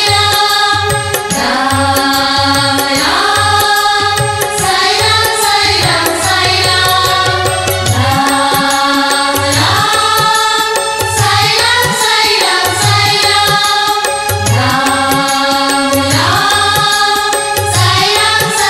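Oriya devotional bhajan: women's voices singing a chant-like refrain in repeated phrases over a steady low drum beat.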